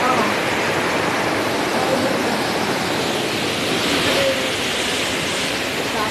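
Steady rushing noise of a large waterfall, Tinuy-an Falls, heard from close by, with faint voices under it.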